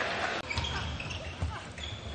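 Basketball bouncing on a court: several low, irregularly spaced dribbles over a steady murmur of arena crowd noise, with a few short high squeaks.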